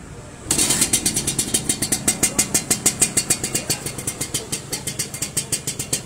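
Suzuki Sport 120 two-stroke single-cylinder motorcycle engine catching about half a second in, then idling with an even, rapid exhaust pulse. The freshly rebuilt engine is running very quietly.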